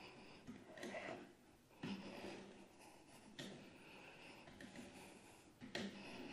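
Near silence with a few faint breaths from a person exercising hard.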